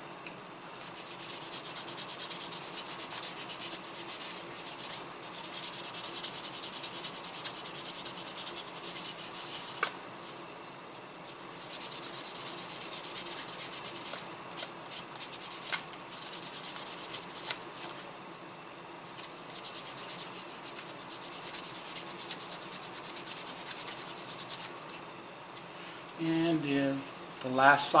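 Fine-grit foam sanding stick rubbed in rapid back-and-forth strokes over a plastic model kit leg, smoothing hardened putty over its seams: a high, dry scratching in long runs with brief pauses about ten, eighteen and twenty-five seconds in.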